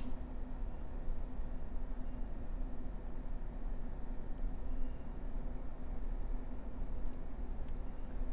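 Butane torch lighter's jet flame hissing steadily, held to the foot of a cigar to light it.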